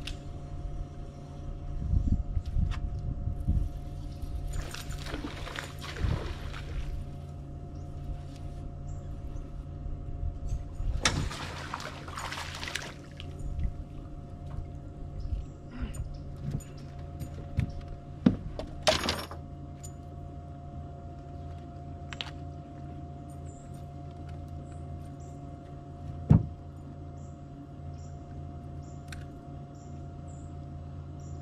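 Fishing from a small aluminium jon boat: a steady low hum runs under everything, with two longer rushing hisses and scattered clicks and knocks of rod, reel and boat. The loudest is a sharp knock about 26 seconds in.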